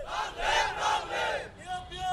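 A crowd of protesters shouting slogans together, in two loud bursts, with a single voice calling out near the end.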